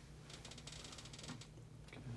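Faint, quick run of small pops and crackles from a side-lying lumbar and pelvic chiropractic adjustment, the joints cavitating under the thrust, from about half a second in to just past one second.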